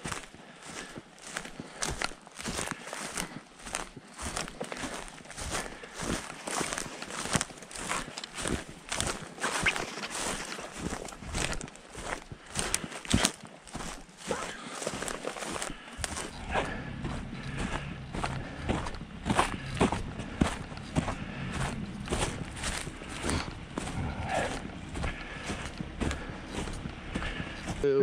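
Footsteps of a person walking through dry grass and brush, with rustling, at about two steps a second. A low steady rumble joins about halfway through.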